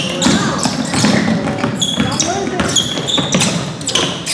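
A basketball being dribbled on a hardwood gym court during play, a run of sharp bounces, with voices calling out in the large gym.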